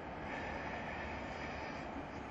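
Steady background noise: a faint, even hiss and hum with no distinct events.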